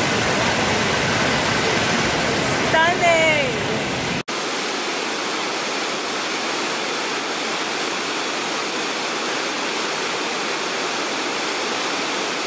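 Steady rushing of river rapids, with a short gliding vocal sound about three seconds in. After an abrupt cut at about four seconds, a waterfall's steady rush continues, a little less deep.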